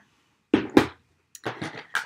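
Stamping tools, an acrylic stamp block and ink pad, being set down and picked up on a tabletop: two sharp knocks about half a second in, then a burst of lighter clattering near the end.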